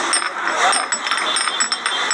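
Busy market ambience: a steady clatter of quick clicks and rattles over a haze of voices.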